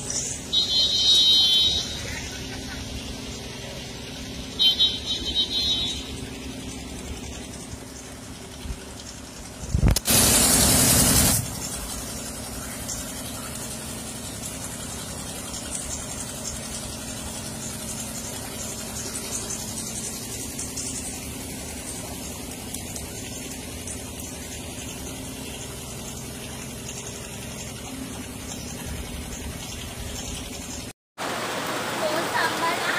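Steady rush of heavy rain and traffic on a flooded street, with vehicles moving through standing water. Two short high-pitched tones sound in the first six seconds, and a loud rush of noise comes about ten seconds in and lasts about a second and a half.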